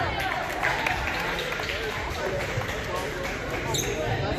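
Voices of players and spectators talking in a large gymnasium, with scattered thumps of a volleyball bouncing on the hardwood floor and a brief high squeak near the end.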